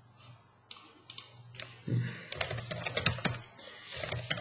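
Typing on a computer keyboard: a few separate keystrokes at first, then a quick run of keystrokes from about halfway through as a command is typed into a terminal.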